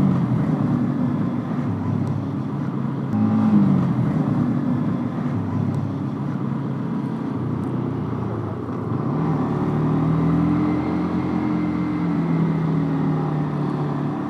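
Motorcycle engine heard from the rider's seat, running at low speed: its note drops near the start and again about three seconds in, then climbs about nine seconds in and holds steady. Wind noise on the microphone runs under it.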